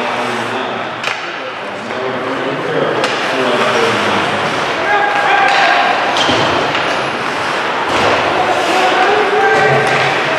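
Hockey crowd and players' voices shouting and chattering during play, with sharp clacks of sticks and puck against the ice and boards now and then.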